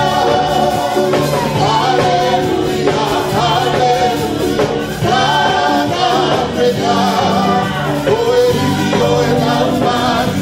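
Live gospel worship song sung into hand-held microphones, over steady sustained low notes.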